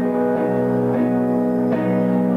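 Live band playing, the guitars holding ringing chords, freshly strummed about a second in and again near the end.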